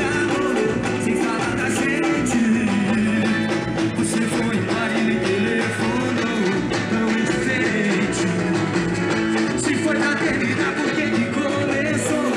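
Live carnival bloco band playing: drums and other instruments with a singer over them.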